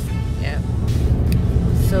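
Inside a moving car, a steady low rumble of road and wind noise, with wind buffeting the microphone through the open window.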